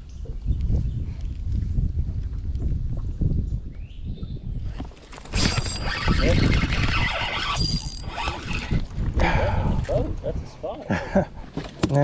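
A spinning fishing reel is cranked in for a couple of seconds about halfway through, with a thin whir over a steady low rumble.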